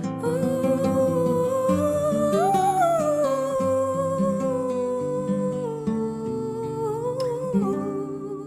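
A woman singing a long, held melismatic line in Arabic over plucked acoustic guitar. Her voice rises about two and a half seconds in, settles back, wavers near the end and fades while the guitar carries on.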